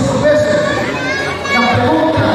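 Several people talking at once, with children's voices among them.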